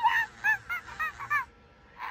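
Electronic animatronic toy monkey chattering through its built-in speaker: a quick run of about six short, high, arched monkey calls, stopping about one and a half seconds in.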